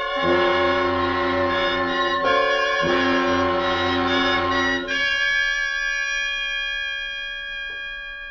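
Orchestral music cue with brass: a few sustained chords that change about two, three and five seconds in, then one long held chord that slowly fades. It is the radio drama's musical bridge at the story's climax.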